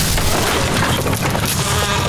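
Wooden treehouse shaking and breaking apart: a low rumble under continuous cracking and splintering of wood and falling debris, with no break.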